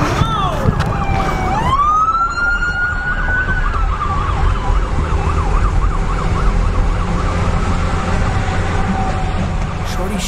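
Police car siren starting a little under two seconds in. It gives one long rising wail that holds and then falls, and then switches to a fast, repeated yelp that stops just before the end.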